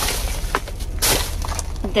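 Thin plastic shopping bag rustling and crinkling as a spool of ribbon is pulled out of it, with sharp crackles that are loudest about a second in.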